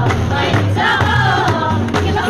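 A group of women singing a Kabyle folk song together in chorus, accompanied by hand-struck frame drums and hand clapping in a steady rhythm.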